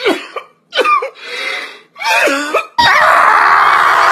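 A man crying with short groaning sobs ("eugh"), three or four separate vocal bursts. Near the end it cuts suddenly to a loud, steady rushing noise.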